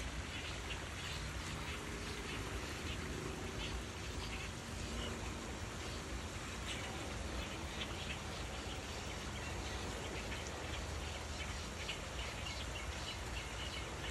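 Night-time chorus of calling animals: many short, rapid chirping calls repeating throughout over a steady hiss, with a few faint lower calls in the first few seconds.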